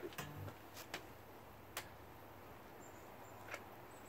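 Mostly quiet, with a few faint sharp clicks and knocks and a brief low hum just after the start: handling noise as a bass guitar is moved about.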